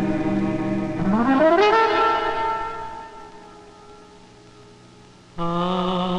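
Film-score music: a sustained note rich in overtones slides steeply upward in pitch about a second in, holds, then fades away. Near the end a new held note with a slow waver in pitch enters abruptly.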